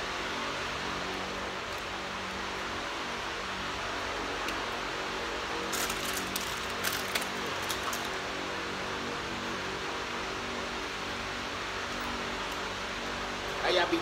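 Steady background noise, like a fan running, with a few faint clicks about six to eight seconds in.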